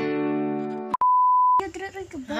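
A strummed acoustic guitar chord rings out and fades. About a second in it cuts off, and a steady high beep takes its place for just over half a second.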